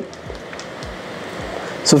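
A steady, even hiss of background noise with no distinct tones, and a word of speech near the end.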